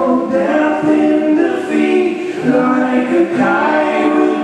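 A rock band playing live: several voices singing held notes in harmony over electric guitars.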